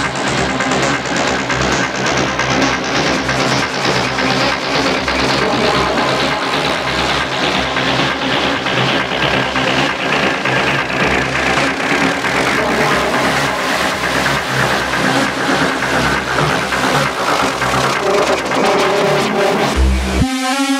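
Techno music from a DJ mix with a steady beat, under a high hissing sweep that slides steadily down in pitch through the passage, a filter sweep building towards a transition.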